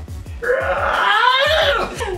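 A person's long drawn-out wailing groan of disgust, its pitch rising and then falling away, over background music with a beat.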